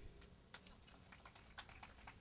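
Faint, scattered applause from a small audience: sparse, irregular hand claps, several a second.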